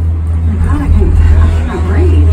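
Steady low rumble of a moving Disney Skyliner gondola cabin, with faint voices talking in the background.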